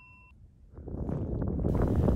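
The tail of a bell-like ding cuts off just after the start. After a short near-silence, outdoor wind rumbles on the microphone and grows louder toward the end.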